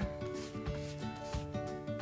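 Flat bristle paintbrush stroking clear chalk-paint top coat onto a painted wooden dresser leg: a soft brushing rub, under quiet background music with a few low beats.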